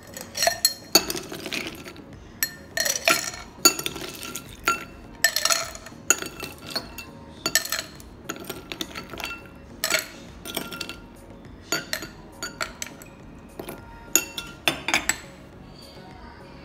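Ice cubes scooped with a metal spoon from a glass bowl and dropped into a tall highball glass: a string of irregular clinks of ice on glass and spoon on bowl.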